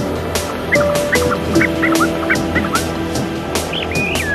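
Psytrance track: a steady driving beat with rolling bass and hi-hats, overlaid with held synth notes and quick warbling, bending synth squiggles.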